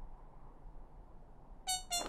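A short gap in the programme's background music with only a faint low hum, then the music comes back in near the end with a bright note.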